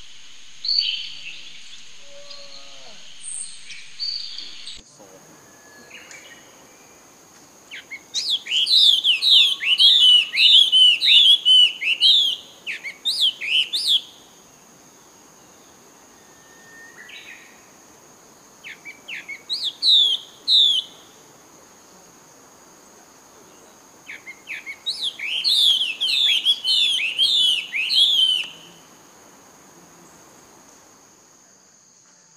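A bird calling in three bursts of rapid, repeated down-slurred whistled notes, the longest starting about eight seconds in, over a steady high-pitched hum.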